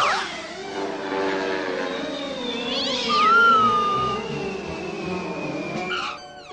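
Cartoon sound effects over a held orchestral score. A loud sudden downward sweep comes at the start, and a cartoon cat yowls about three seconds in. A thin high whistle falls slowly through the second half, the classic falling-through-the-air effect as the cartoon cat drops from the plane.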